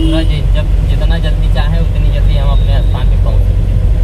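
Mahindra Bolero Maxx Pik-Up HD pickup truck on the move, heard from inside the cab: a steady low engine and road rumble.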